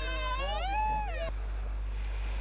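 A toddler crying out in distress as a finger is pricked for a blood test: one long, high, wavering wail that cuts off suddenly a little over a second in.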